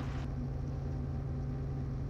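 Robinson R44 helicopter's engine and rotors heard inside the cabin, a steady low drone. A faint hiss above it drops away about a quarter of a second in.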